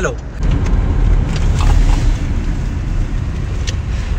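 Steady low rumble of a car on the move, heard from inside the cabin, with a few faint ticks and knocks.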